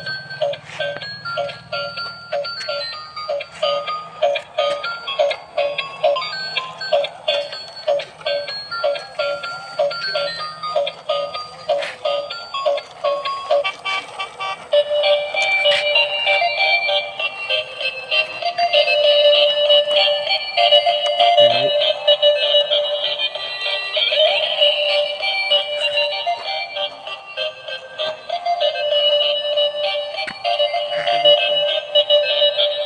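Electronic toy tune from a musical light-up toy car's small speaker: thin, beeping notes on a steady beat, turning into a busier, louder melody about halfway through.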